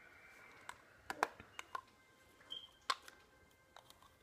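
A scatter of small sharp clicks and taps from fingers handling and prying at a small plastic eyeshadow compact, the strongest a little after one second in and again near three seconds.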